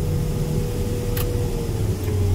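Combine harvester running, heard from inside the cab while unloading soybeans into a grain cart: a steady low drone with a thin whine over it that starts to sag in pitch near the end. A single sharp click about a second in.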